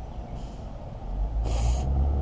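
A short, sharp breath, like a snort, about one and a half seconds in, over a low rumble that grows louder in the second half.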